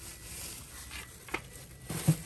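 Clear plastic produce bags crinkling quietly as bagged vegetables and apples are rummaged through by hand, with a couple of short taps in the second half.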